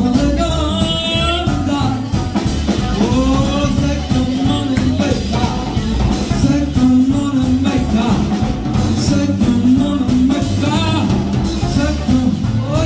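Live blues band playing: a man singing through a microphone over electric guitar, upright bass and drum kit.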